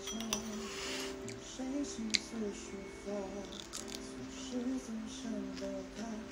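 Music playing: a melody of several steady and gently wavering tones, with two short sharp clicks, one just after the start and one about two seconds in.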